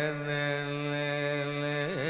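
Carnatic male vocalist holding one long steady note, with a quick wavering pitch ornament (gamaka) near the end.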